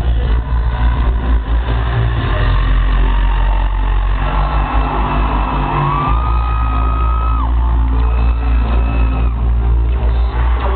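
Live rock band played loud through a concert PA, heard from the crowd as a heavy, steady low drone. About six seconds in, a high note slides up and is held for about a second and a half.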